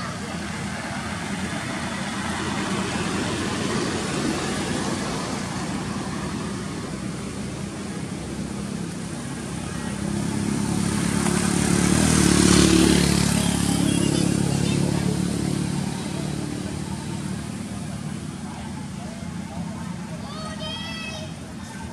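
A motor vehicle passing on the road, its engine and tyre noise growing louder to a peak about twelve seconds in and then fading away, over steady background traffic noise.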